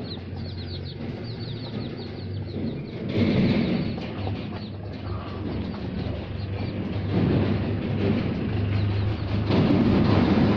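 Ten-day-old desi chicks peeping rapidly in the first second or so, a quick run of high, thin cheeps. After that come mostly rustling and handling noises, loudest about three seconds in and near the end, over a steady low hum.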